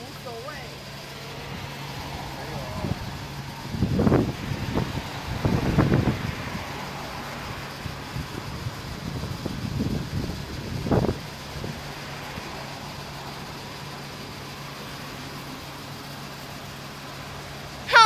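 Road traffic passing on the street, over a steady low hum, with some quiet voices.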